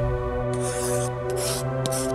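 Pencil scratching across paper in a short scribbling stroke about half a second in, over steady background music.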